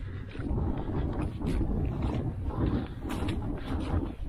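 Wind buffeting the microphone: a steady, unsteady low rumble, with a few faint knocks.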